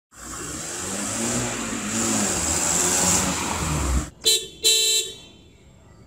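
Car sound effect: an engine running and growing louder for about four seconds, cut off, then two short horn toots, the second one longer.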